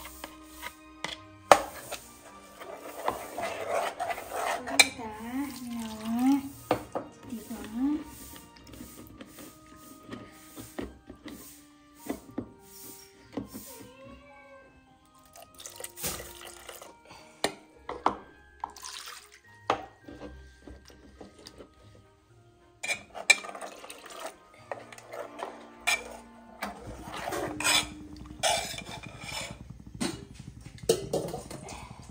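A steel ladle scraping, clinking and knocking against a steel bowl and a cooking pot as thick ground masala paste is scraped into the pot. Liquid is poured in from the bowl around the middle.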